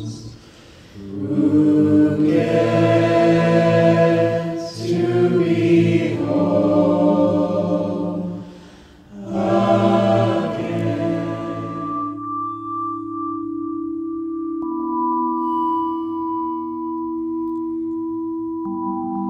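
A choir singing sustained chords, broken by two short pauses between phrases. Twelve seconds in, it gives way to a steady ambient drone of a few held tones, one of which shifts pitch a few seconds later.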